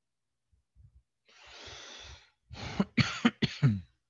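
A person coughing about four times in quick succession near the end, after about a second of breathy hiss.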